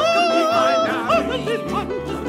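Live stage music without words: a high lead line holds one long note with vibrato for nearly a second, then breaks into quick wavering notes, over a steady keyboard accompaniment.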